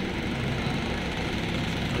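Escorts F15 pick-and-carry crane's diesel engine running steadily.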